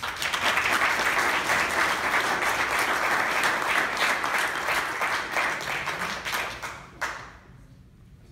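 Audience applauding, fading away and stopping about seven seconds in.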